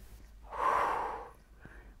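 A woman's long audible breath through the mouth, about a second long, heard as a sigh of relief.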